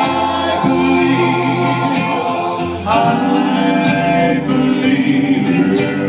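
Three men singing in three-part harmony into microphones, holding long notes over a recorded backing track with a bass line, the chord changing about three seconds in.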